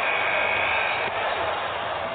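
A steady rushing hiss, with a thin high whistling tone over it for about the first second. It eases off slightly near the end.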